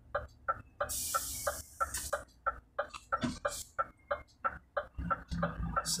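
Vehicle turn-signal indicator ticking steadily in the cab, about three clicks a second, with a short hiss about a second in.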